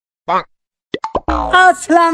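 A short cartoon-style 'plop' sound effect about a quarter second in, then a few sharp clicks, and a man's voice starting after about a second.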